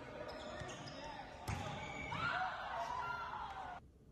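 Indoor volleyball rally in a sports hall: a sharp ball strike about a second and a half in, followed by players' voices calling out. The sound cuts off suddenly near the end.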